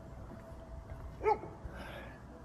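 A dog barks once, a single short bark about a second in.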